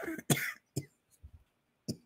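A woman who is ill coughing and clearing her throat in several short separate bursts.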